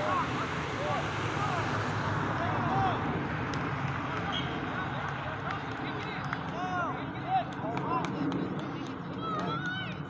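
Distant shouts and calls of young soccer players and onlookers across an open field: many short scattered cries over a steady background, with a brief sharp thump about seven seconds in.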